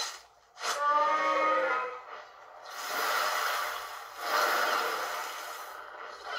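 Fight sound effects from a kaiju cartoon playing through laptop speakers: a monster cry falling in pitch about a second in, then two long rushes of noise like energy blasts.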